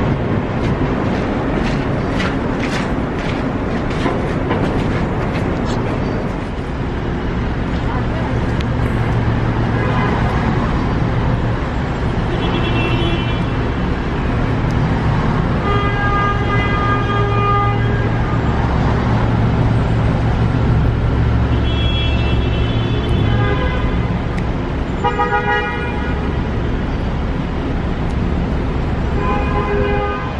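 City street traffic: a low engine drone with several car horn honks, one held for about two seconds midway and shorter ones before and after.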